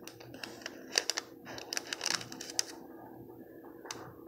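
Faint, irregular small clicks and taps from a paintbrush working paint onto a cookie, most of them between one and three seconds in, over a low steady hum.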